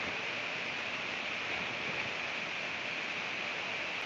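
Steady hiss with no other sound: the noise floor of a headset microphone, with no one speaking into it.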